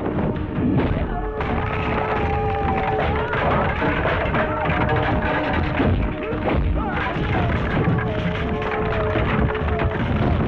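Fight-scene background music with a wavering lead melody that fills out about a second and a half in. Repeated punches, thuds and crashes of a brawl land over it.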